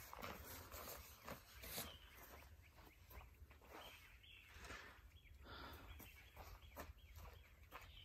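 Near silence: faint footsteps on dry dirt and scattered light rustles over a low steady rumble.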